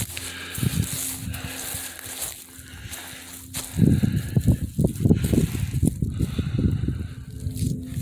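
Low, irregular buffeting rumble on the microphone, loudest from about four seconds in. Before that, a faint steady hum.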